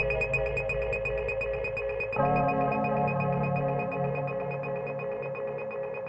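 Live electronic music: held synthesizer chords over a fast, high ticking pattern, then a fuller chord with a low bass line comes in about two seconds in.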